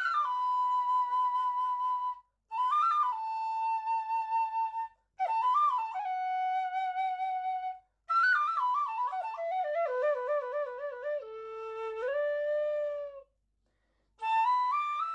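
Solo bamboo flute in D (middle register) playing a slow melody: three phrases that each rise into a long held note, separated by short silences. Then a descending run of notes with vibrato settles onto a low held note.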